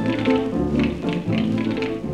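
Instrumental introduction of a 1930s German Schlager recording: a dance orchestra playing with a steady beat of about two a second, just before the singer comes in.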